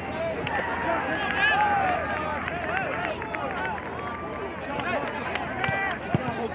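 Many voices of spectators and players shouting and calling indistinctly across a soccer field, with a couple of sharp knocks of a ball being kicked near the end.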